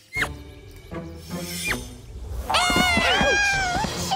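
Cartoon voices crying out in a long, wavering, falling yell in the second half, after a few short sliding cartoon sound effects, over background music.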